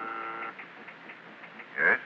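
An office intercom buzzer sounding one steady, unwavering tone, a sound effect in an old-time radio drama; it cuts off about half a second in. Near the end a man's voice answers "Yes?" over the intercom.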